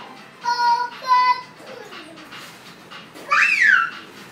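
A high child's voice sings two short held notes, then, near the end, a loud high squeal that rises and falls in pitch.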